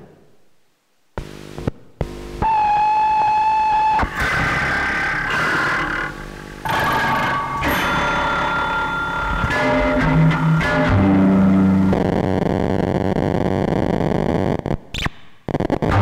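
Prepared antique LM Ericsson switchboard, with wires strung across its wooden base and a metal bell, played by hand through a circuit-bent Behringer distortion pedal. After a few clicks comes a held, ringing tone, then harsh distorted, glitchy noise with shifting pitches and a few sudden cut-outs near the end.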